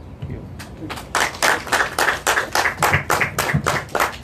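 A small group clapping, starting about a second in: distinct, quick claps at about five or six a second.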